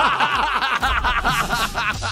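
Two men laughing hard together, loud and unbroken, in quick rippling bursts.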